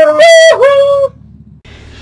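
A high, drawn-out sung voice: one long held note, then a second that dips and holds before breaking off about a second in, leaving a faint low hum.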